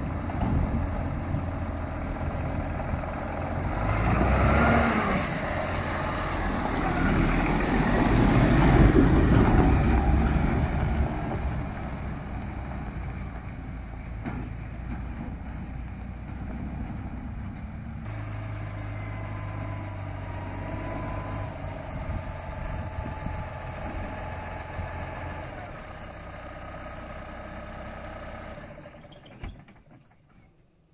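Farm tractor's diesel engine running as the tractor pulls out and drives off with a grain trailer, loudest as it passes about eight to ten seconds in. After that it keeps running, steadier and quieter, with a thin high whine near the end.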